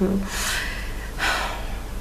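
A woman's drawn-out hesitation "euh", then two audible breaths through the mouth, one about half a second in and the other just past a second, as she pauses mid-sentence.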